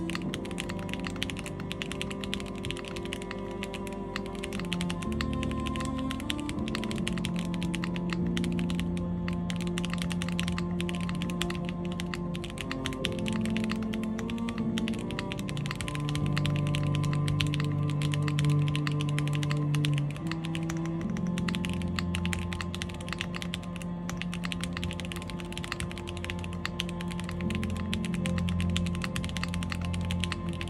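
Fast, continuous typing on an IRON165 R2 custom mechanical keyboard with stock WS Red linear switches in a polycarbonate plate, gasket-mounted, with GMK keycaps: a dense stream of keystroke clacks. Background music with sustained low notes plays underneath.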